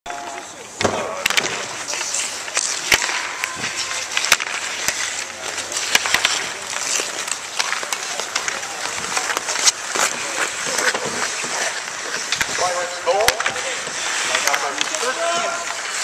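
Ice hockey skates scraping and carving on an outdoor rink, with many sharp clacks of sticks striking the puck and each other. Voices call out near the end.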